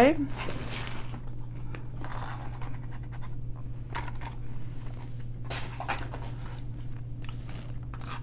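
Paper and cardboard fast-food packaging being handled and moved on a plastic tray: a few scattered rustles and light knocks over a steady low hum.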